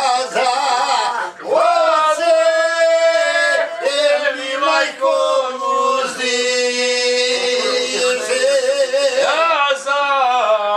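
A man singing a slow song unaccompanied, in long held notes that waver and slide between pitches, with short breaks between phrases.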